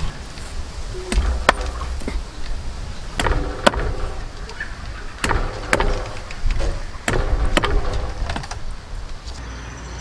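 Meat cleaver chopping lemongrass stalks and ginger on a thick round wooden chopping block: sharp knocks, mostly in pairs about half a second apart, coming every two seconds or so.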